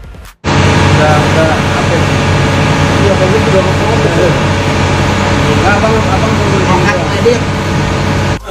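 Loud babble of several voices from a crowded gathering over a steady low hum, starting abruptly about half a second in.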